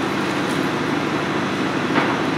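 Steady, even background noise: room tone with a constant hiss.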